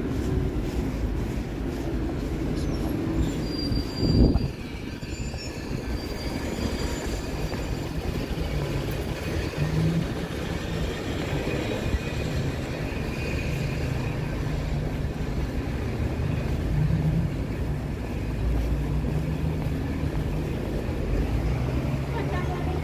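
Street traffic: a steady low rumble of passing vehicles, with a thin high squeal about three seconds in and a brief loud thump just after it.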